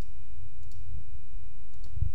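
Steady low hum of the recording's background noise, with a faint high whine and a few faint, sharp clicks spread through the pause.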